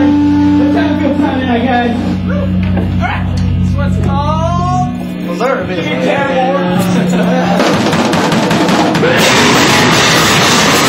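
Live rock band between songs: held low bass and guitar notes ring under voices, then stop about halfway through. Drums and cymbals start, and the full band comes in loud near the end, launching into a fast heavy song.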